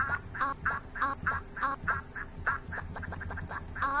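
A short quacking sound, looped over and over about three times a second, with a faster run of repeats near the end of the third second, over a low steady hum.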